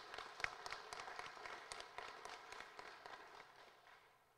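Fairly faint applause: many hands clapping, tapering off and dying away near the end.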